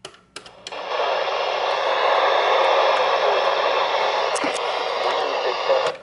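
A few quick button clicks, then an AcuRite weather alert radio's speaker putting out a steady rush of static for about five seconds, cutting off near the end. The static is a weather radio broadcast on a signal too weak to come in clearly.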